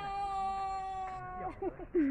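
A person calling out a long, drawn-out "hellooo" on one steady pitch for about a second and a half, then breaking into a few short wavering vocal sounds.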